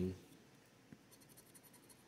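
The last of a spoken word, then near silence broken by a few faint scrapes and ticks of a plastic scratcher on a scratch-off lottery ticket.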